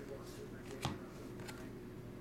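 Trading cards being handled and slid against one another: a few faint clicks of card stock, with one sharper snap a little under a second in.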